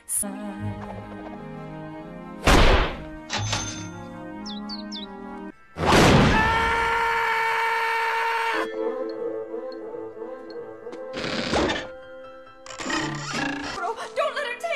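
Cartoon orchestral score with slapstick sound effects: loud crashing hits about two and a half seconds in and again near the end. The loudest crash comes about six seconds in and is followed by a held chord lasting about two and a half seconds.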